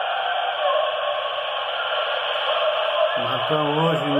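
Thin-sounding background music with no bass, only the middle range, running steadily; about three seconds in a man's voice starts talking over it.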